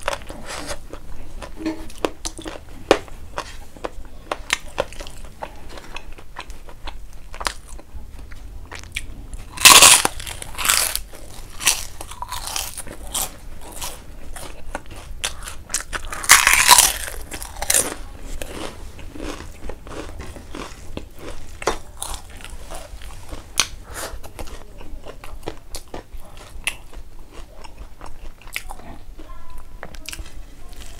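Close-up eating sounds: loud crunchy bites into a crisp puffed papad cracker, one about ten seconds in and another about sixteen seconds in. Between and after them there is steady soft chewing with small mouth clicks.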